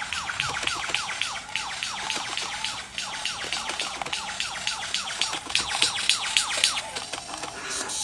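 Male superb lyrebird singing its display song: a fast, even run of short whistled notes that each fall in pitch, about five or six a second, mixed with sharp clicks.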